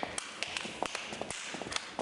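Feet tapping and stamping on the floor as two people dance: a quick, irregular run of sharp taps.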